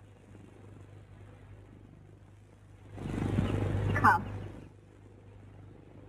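Steady low hum and hiss of an old film soundtrack, broken about three seconds in by a short voice sound lasting under two seconds, with a sharp click near its end as the loudest moment.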